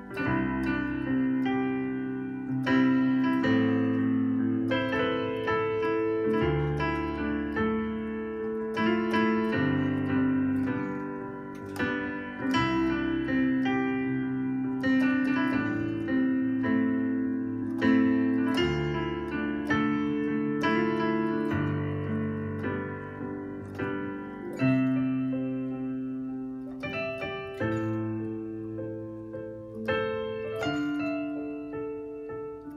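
Digital piano playing a I–vi–ii–V progression in C major (C major, A minor, D minor, G major), the left hand sounding each chord's bass note under right-hand chords. The chords are struck and held, and a new chord comes every few seconds as the progression repeats.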